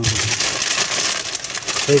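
Plastic bag crinkling as it is handled, a dense crackling rustle that lasts almost two seconds.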